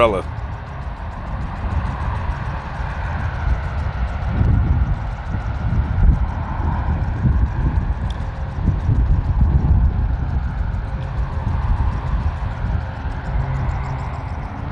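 Wind buffeting the microphone outdoors: an uneven low rumble that rises and falls, with a faint steady background din.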